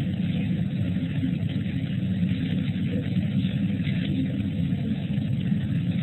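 Steady low rumble and hiss of background noise from an open microphone on a telephone-quality call line.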